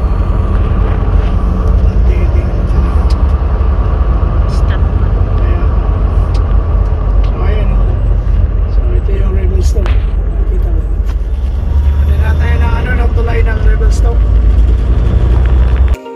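Semi-truck driving, heard from inside the cab: a loud, steady low rumble of engine and road noise, with some quiet talk underneath.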